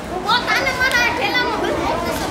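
Several children's high-pitched voices talking and calling out at once.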